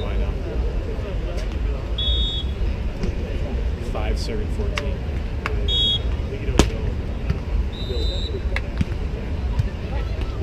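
Beach volleyball being struck by hand, a single sharp smack about two-thirds of the way through, most likely the serve, over steady outdoor event ambience with background chatter. A few short high chirps are heard along the way.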